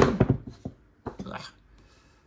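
Trading cards being slid off a hand-held stack one at a time, with light papery rustles and faint clicks of card against card.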